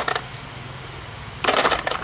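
Loose aluminium electrolytic capacitors clattering against each other and a concrete floor as they are tossed and gathered into a pile. There is a short clatter right at the start and a longer one about one and a half seconds in.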